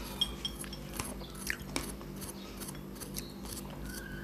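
Close-miked eating of watermelon: soft chewing and biting, with a few sharp clicks, most of them in the first two seconds, over a faint steady hum.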